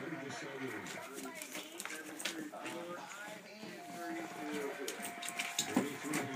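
Indistinct speech in the room, with an on-and-off steady tone and a few sharp clicks, several of them bunched near the end.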